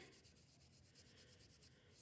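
Faint, quick strokes of a wet paintbrush across paper as watercolour is brushed on.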